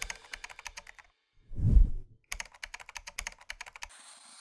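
Rapid keyboard-typing clicks, a typing sound effect for on-screen text. About a second and a half in they break for a short low whoosh, the loudest sound, and then the typing resumes.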